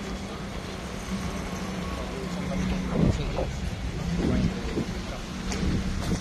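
Street traffic: cars driving past with a steady low engine hum under a constant rush of noise. Short bursts of voices come through about halfway in and again near the end.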